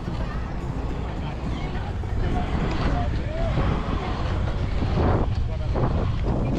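Wind buffeting the microphone and the rolling rumble of inline skate wheels on an asphalt pump track as the skater rides, with faint voices of people nearby.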